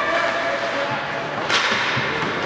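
Ice hockey rink during play: steady arena noise with spectators' voices, broken by one sharp crack of a puck impact about one and a half seconds in.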